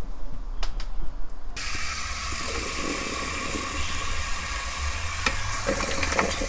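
A kitchen tap running hard into a bowl in a steel sink, starting abruptly about a second and a half in, as the parboiled chicken feet are tipped in to be rinsed in cold water. A few sharp knocks of the pan near the end.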